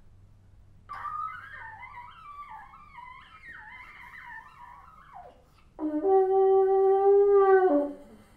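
Solo bassoon playing contemporary music: about a second in, a quiet high line that wavers and slides in pitch for about four seconds. Near the six-second mark comes a loud, steady held note lasting about two seconds, which drops in pitch as it ends.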